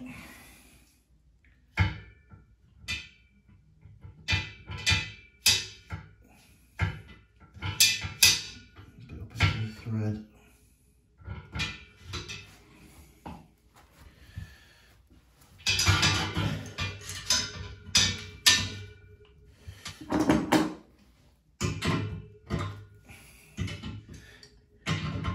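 Irregular clicks, taps and rustles of hands wrapping PTFE tape and jointing paste onto a radiator valve fitting and handling its metal parts, busiest about two-thirds of the way through.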